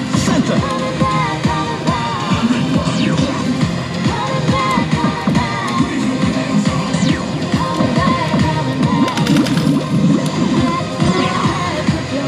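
Loud, continuous music and electronic din in a pachinko parlour while a Disc Up pachislot is played game after game, with short clicks scattered through it.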